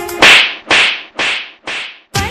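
A sharp, noisy hit effect dropped into the dance-music mix while the music cuts out, repeating as an echo four times about half a second apart, each repeat quieter and duller than the one before.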